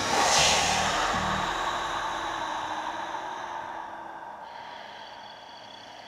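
A sound-effect transition in a horror audio drama: a sudden swell of hiss-like noise that dies away slowly over several seconds, with a low hum under its first second or so. Past the middle, faint steady high tones set in and stay until the end.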